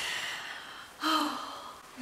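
A woman's long, breathy exhaling sigh, then a brief voiced sound about a second in.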